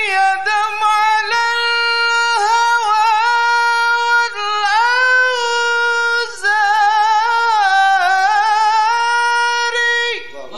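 A high solo voice singing an ornamented sholawat melody: long held notes that waver and slide between pitches, in phrases broken every second or two.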